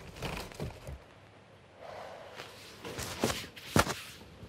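A person's soft breathy exhale among small movement noises, with one sharp click near the end that is the loudest sound.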